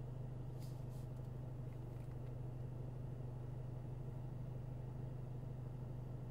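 Faint, steady low hum inside the cabin of a stationary 2024 Ford Mustang.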